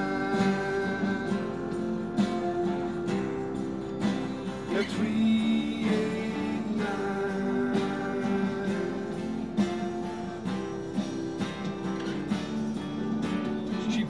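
Acoustic guitar strummed and picked through an instrumental passage between sung verses, with a melody of long held notes over it.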